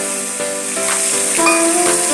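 Onion and tomato frying in hot oil in an aluminium kadai, a steady high sizzle as ginger-garlic paste is stirred in, with background music playing a melody over it.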